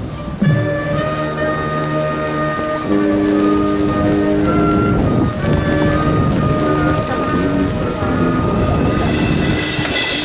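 Marching band brass playing slow, held chords that change every second or so, under a steady hiss of rain.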